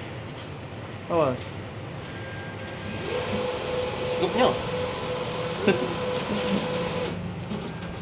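Hyosung ATM's cash dispenser mechanism whirring steadily for about four seconds while it picks and counts the banknotes for a withdrawal, then stopping suddenly.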